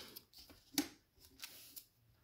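Magic: The Gathering trading cards being handled: a few faint scrapes and ticks of the cards, with one sharper tick a little under a second in.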